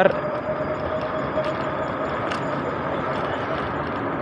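Steady rush of wind and road noise from riding an electric bicycle along a city street, with a faint steady whine that fades about halfway through and a few light clicks.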